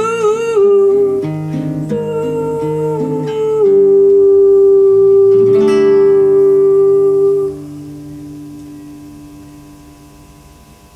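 A woman sings to a plucked classical guitar, closing the song on a long held note that stops about seven and a half seconds in. A last guitar chord, struck about six seconds in, rings on and fades away.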